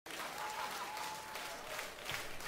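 Live concert audience applauding, a wash of many hands with single claps standing out, at a fairly low level.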